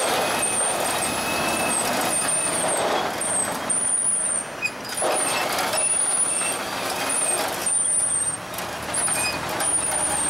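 Road traffic passing close by, cars and a lorry, a continuous rushing noise that swells and eases as vehicles go past. Short high-pitched squeaks recur about once a second over it.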